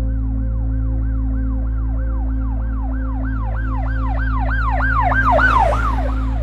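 Emergency-vehicle siren on a fast yelp, its pitch sweeping up and down about three times a second. It grows louder to a peak near the end, then falls away. Steady low musical tones run underneath.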